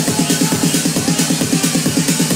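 Techno played loud over a tent's PA, with a fast, steady, driving beat and hi-hats, heard from within the crowd.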